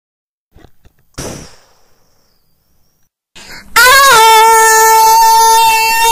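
A sudden hit about a second in, then a very loud, long cry held at one steady pitch, beginning about three and a half seconds in and sliding down as it ends.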